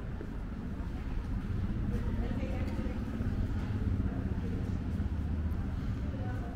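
City street ambience: a low traffic rumble that swells through the middle and eases near the end, with indistinct voices of passers-by.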